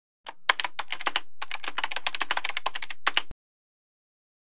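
Rapid typing on keys: a quick, uneven run of sharp clicks, a typing sound effect that starts just after the beginning and stops suddenly a little over three seconds in.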